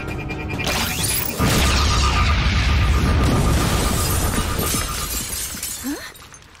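Cartoon sound-effect blast of a sonic 'sound bomb': a sudden loud burst about a second and a half in, with a deep rumble and a pulsing high tone, fading away over the next few seconds, with music underneath.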